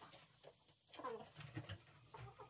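A hen gives a faint, low, falling call about a second in. A couple of soft clicks are also heard.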